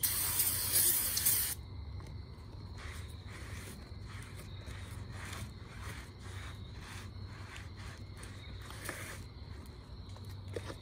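Aerosol brake cleaner sprayed onto a new brake rotor: a loud hiss lasting about a second and a half. It is followed by a cloth rubbing over the rotor in repeated short strokes.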